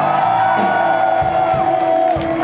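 Live metal band playing with electric guitars, one long held note sustained through and falling away at the very end.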